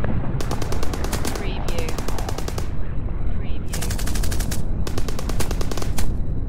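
Bursts of rapid automatic gunfire, four bursts of about a second each, over a constant low battle rumble.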